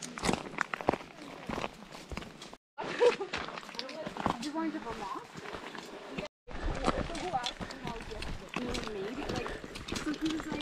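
Hikers' footsteps on loose gravel and rock, with indistinct talking among the group. The sound drops out briefly twice, about two and a half and six seconds in, where clips are cut together.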